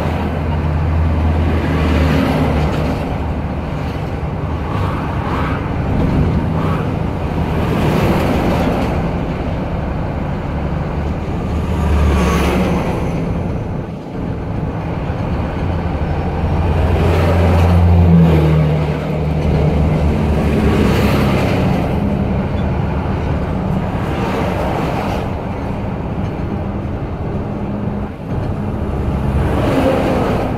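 Heavy truck's diesel engine running in low gear, heard from inside the cab: a steady low drone that shifts in pitch a few times, with several swells of road noise as oncoming trucks pass.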